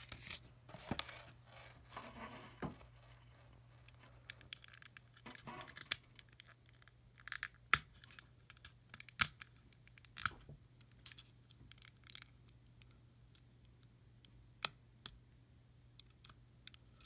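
Faint scratching and scattered small clicks of fingers and fingernails working at the battery compartment of a clear plastic Digimon digivice, trying to prise the button-cell battery out. A few sharper plastic clicks stand out after the middle and near the end.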